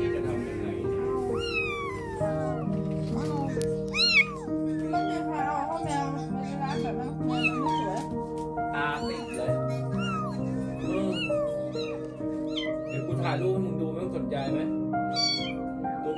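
Young kittens meowing again and again in short, high-pitched mews, the loudest about four seconds in, over background music with held notes.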